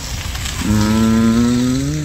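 Car engine idling low, then revving up a little over half a second in, its pitch climbing slowly.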